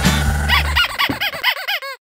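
Upbeat swing-style background music stops a little under a second in. Over its last moments starts a rapid run of squeaky chirps, each rising and falling in pitch, coming faster and faster until the end, like a cartoon squeak effect.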